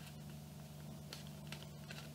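Faint rustling and a few light ticks of thin card being folded and creased by hand, over a steady low hum.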